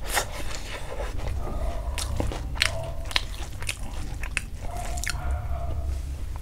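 Close-miked chewing of a mouthful of hand-eaten rice, with wet smacking clicks at irregular intervals.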